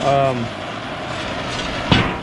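A steady hissing rush, with a brief vocal sound at the start and a single sharp knock on the steel plate just before the end.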